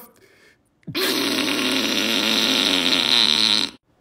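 A long, steady fart sound, starting about a second in, lasting about three seconds and cutting off sharply.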